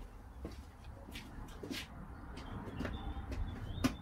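Faint footsteps and shuffling as a person walks across a garage floor, a few light scuffs and knocks over a low rumble.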